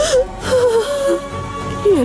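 A woman wailing and crying in distress over held notes of background music.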